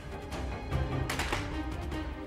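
Tense background music score with low sustained notes and a few sharp percussive hits.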